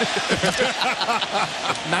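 Male broadcast commentators laughing and talking in short bursts over the steady noise of a stadium crowd.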